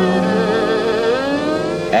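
A violin accompanies a slow Hungarian nóta between a man's sung lines: a held note, then a slow upward slide in pitch leading into the next phrase.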